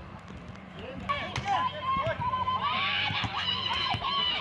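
Football players shouting on the pitch: one long, wavering call held from about a second in, with a couple of sharp knocks.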